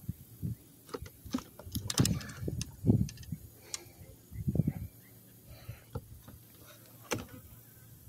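Irregular handling noises in a plastic kayak while a just-landed small catfish is held: a few low thumps and scattered sharp clicks and rattles, quieter after about five seconds.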